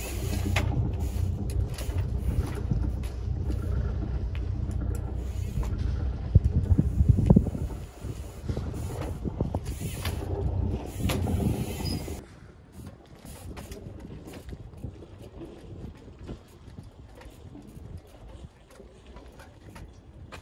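A nearby engine running steadily with a low rumble, which stops suddenly about twelve seconds in. Over it and afterwards come sharp knocks and clicks from a trials bike hopping onto a wooden bollard and landing.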